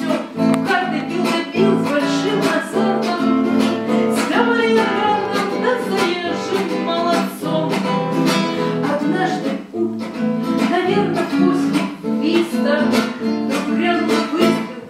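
Acoustic guitar strummed and plucked steadily, playing a song accompaniment.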